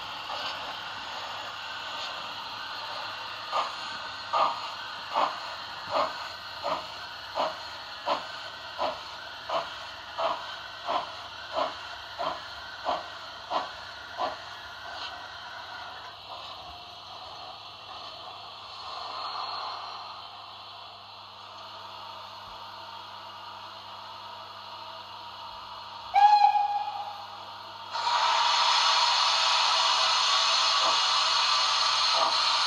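Sound decoder of an H0 model steam locomotive (Roco 18 201 with Henning sound) playing through its small speaker: a steady steam hiss with a run of about sixteen exhaust chuffs that quicken slightly as it pulls away, then die out. Near the end comes a short whistle blast, then a sudden, louder steady hiss.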